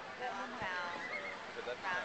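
A person's high, wavering voice for just under a second, about half a second in.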